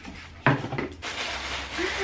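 A knock about half a second in, then paper or plastic packaging rustling as a pair of shoes is unwrapped.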